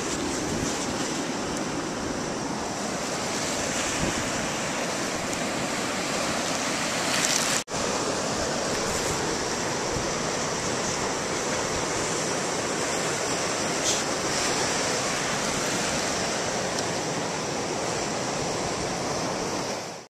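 Steady ocean surf with wind on the microphone, cut by a brief dropout about eight seconds in.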